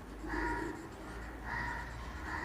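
Dry-erase marker squeaking on a whiteboard as lines are drawn: two short, steady, high squeaks, each about half a second long.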